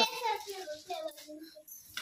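Speech only: a short spoken word, then softer talking that trails off into a quiet room.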